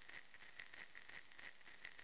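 Near silence after the song's final note has died away: a faint hiss with scattered faint clicks.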